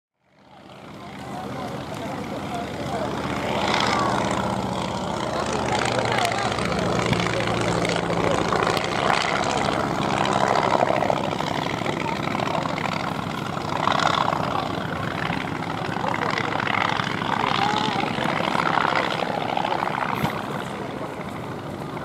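Polikarpov Po-2 biplane's five-cylinder radial engine running steadily in flight, fading in over the first second or two, with people's voices heard over it at times.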